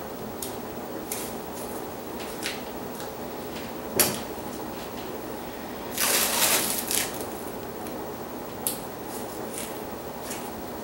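Blue painter's tape being pulled off its roll and pressed onto a wooden board: a ripping sound about a second long, about six seconds in, with a few sharp taps and clicks from handling the tape and board, over steady room noise.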